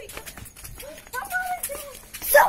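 Quick footsteps of children running on a concrete path, with a child's short vocal sounds partway through.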